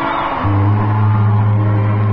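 Live band music: a held chord, with a low bass note that comes in about half a second in and sustains.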